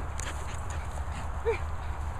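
A dog giving one short whine, rising and falling in pitch, about three-quarters of the way in.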